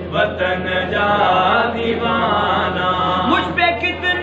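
Male voice chanting a Sindhi devotional naat melody without instruments, over a microphone, with a steady low electrical hum underneath.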